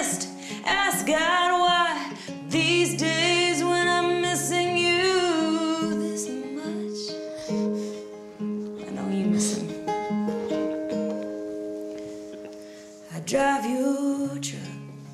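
Acoustic guitar with a woman singing: long sung notes over the guitar for about the first six seconds, then the guitar carries on with picked single notes, and the voice comes back in just before the end.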